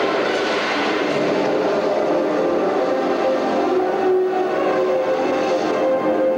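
Film soundtrack: a steady rushing roar under sustained orchestral music with long held notes.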